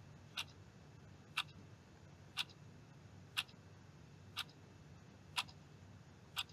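Clock ticking sound effect: a sharp tick exactly once a second, six in all, running as a timer while a question is being answered.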